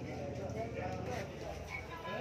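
Quiet background talk among spectators over a steady low hum, with no sharp ball or cue click.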